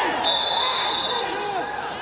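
A referee's whistle blown once, one steady high blast of about a second, stopping play for a foul, with players' shouts just before and after it.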